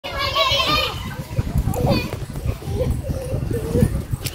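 Children's voices at play, a high-pitched call in the first second followed by shorter shouts and chatter.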